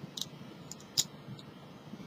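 A few faint, short clicks from a steel hand dental scaler working against a tooth to break off calculus, two of them standing out near the start and about a second in.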